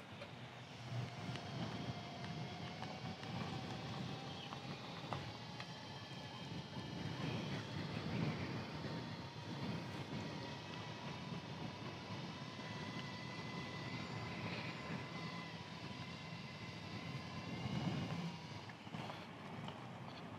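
Electric hub motors in inline skate wheels whining as the skates ride along. The whine climbs in pitch over the first several seconds as the skates gather speed, holds steady, and fades near the end, over a low rumble of wheels rolling on pavement.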